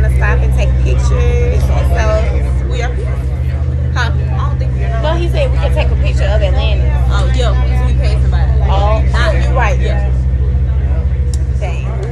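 Steady low drone of a passenger vehicle's motor heard from inside the cabin, with people talking over it throughout.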